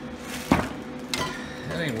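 Two sharp metal knocks over a faint steady hum: the loudest about half a second in, a lighter one about a second later. A man's voice starts near the end.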